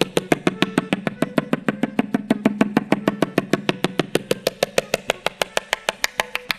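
Tabla played fast in Teentaal: crisp, evenly spaced strokes at about eight a second on the treble drum, over a low ringing tone from the bass drum that swells around the middle.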